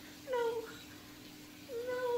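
Someone crying in two short, falling, whimpering wails, the second starting near the end.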